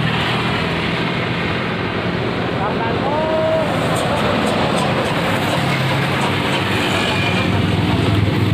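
Road traffic on a highway: the steady hum and tyre noise of passing vehicles, with one engine growing louder a little past halfway. A few words of distant talk come briefly about three seconds in.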